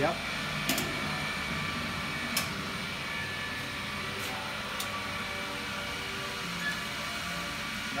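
Brewhouse pump and stainless pipework running with a steady mechanical hum as wort is cast out of the kettle through the plate heat exchanger. Several sharp metallic clicks in the first five seconds come from valves being worked by hand.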